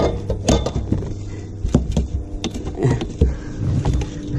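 Scattered knocks and clicks of fishing gear being handled on a boat deck while someone reaches for a landing net, over the low rumble of movement against a body-worn camera.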